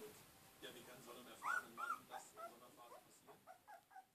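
A 17-day-old Polish Lowland Sheepdog puppy whimpering: a string of short, high whines, the two loudest about a second and a half in, followed by a quick run of fainter ones.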